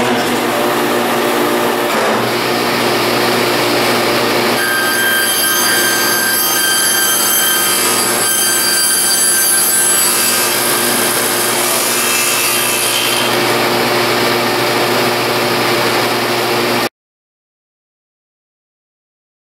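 Table saw running with a steady hum. About four and a half seconds in, the blade is cranked up into a laminated Baltic birch plywood block to cut a blade-holder slot, which adds a higher whine for about eight seconds. The sound cuts off suddenly near the end.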